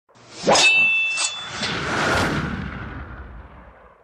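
Intro sound effect of metallic clangs. A sharp ringing strike comes about half a second in, then two lighter hits, followed by a swelling whoosh that fades away over the next two seconds.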